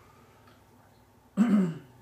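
A man clears his throat once, about a second and a half in, after a near-silent pause.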